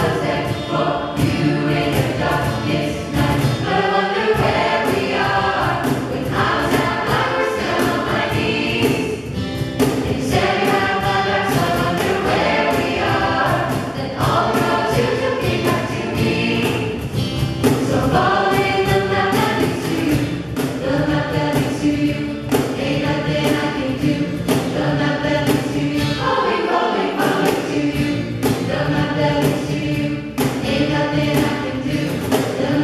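Vocal jazz choir singing in close harmony through handheld microphones, several voices moving in parts over a steady, regular beat.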